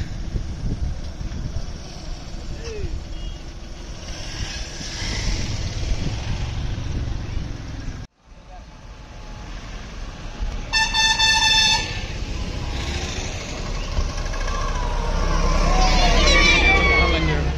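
A vehicle horn sounding one steady note for about a second, over the low rumble of vehicle engines on a road, with voices around.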